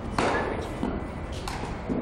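Baseball batting practice in a cage: a loud thump about a quarter-second in, then a sharper knock about a second and a half in, from the ball meeting the bat and the netting.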